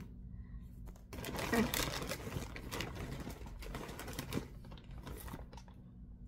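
Rustling and small clicks of yarn skeins and their labels being handled and shuffled, busiest for a few seconds and then fading, over a steady low room hum.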